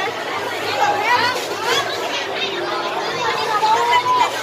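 Busy chatter of several voices talking over one another, children's high voices among them.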